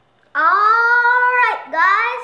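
A child's voice in two drawn-out, gliding phrases: a long one starting about a third of a second in, then a shorter one near the end.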